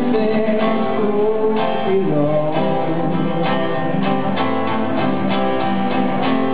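Live music: an acoustic guitar strummed steadily, with a melody line sliding up and down in pitch over it.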